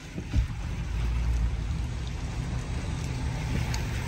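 Pickup truck running at low speed, heard from inside the cab: a steady low engine and road rumble under a light hiss, with no other distinct event.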